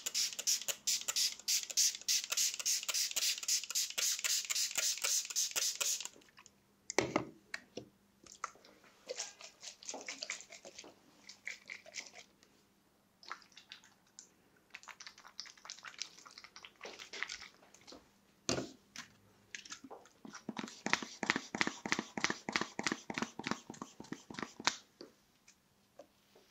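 A plastic squeeze bottle squeezed rapidly over a man's hair, about five sharp hissing puffs a second for the first six seconds, then in shorter runs through the rest.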